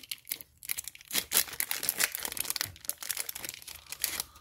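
Foil wrapper of a MetaZoo trading-card booster pack being torn open by hand and crinkled, a run of irregular crackles and rustles as the cards are pulled free.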